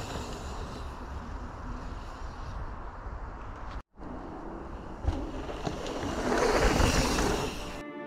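Mountain bike riding a dry dirt trail: a steady rush of wind on the camera microphone and tyre noise, with a few knocks from the bike over the ground. The sound drops out for an instant about four seconds in and grows louder near the end as the speed builds.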